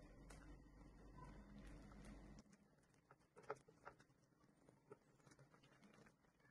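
Near silence, with a few faint, soft irregular clicks and squelches from a silicone spatula stirring thick cornmeal dough in a frying pan. A low hum underneath stops about two and a half seconds in.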